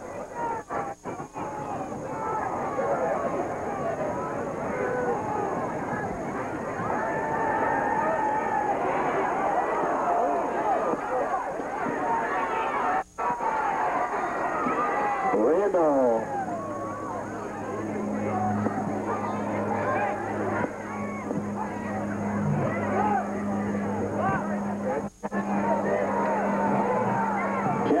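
Football crowd in the stands, many voices shouting and cheering at once, with a steady low hum joining about halfway through. The sound cuts out briefly twice.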